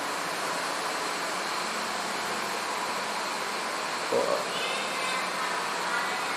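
Steady, even hiss of background noise, with one short high-pitched squeak about four seconds in.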